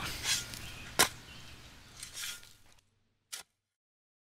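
Faint outdoor ambience with one sharp strike about a second in, then the sound fades away, with a brief click shortly after three seconds.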